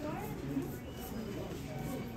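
Indistinct talking with no clear words.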